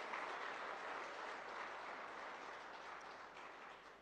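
Audience applauding, faint and distant, slowly dying away toward the end.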